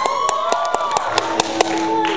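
A man singing a Hmong love song into a microphone, his voice gliding and wavering over a steady backing track and trailing off partway through. Several sharp, irregularly spaced taps cut through the singing.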